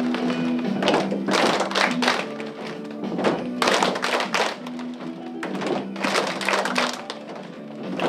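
A group of children clapping their hands in time with instrumental music, in short bursts of several claps every second or two.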